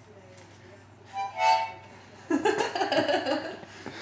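A toddler blowing into a harmonica: a short, bright note about a second in, then a longer, uneven, wavering sound of several reeds from about halfway to near the end.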